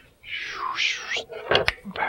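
Clear plastic packaging tray of an action figure crinkling as it is handled, followed by two sharp plastic clicks about a second and a half in.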